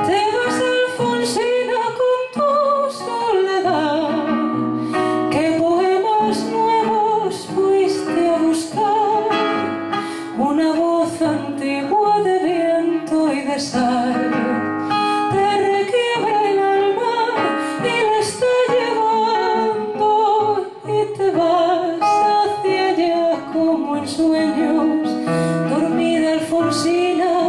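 A woman's voice singing a slow zamba melody with vibrato, accompanied by acoustic guitar.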